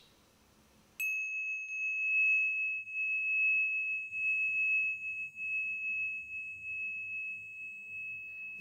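A single high, pure ringing tone, like a struck bell, starts abruptly about a second in and keeps ringing steadily, wavering slightly in loudness.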